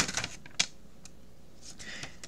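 A few faint, short clicks over low room tone in a pause in the speech; the sharpest comes about half a second in.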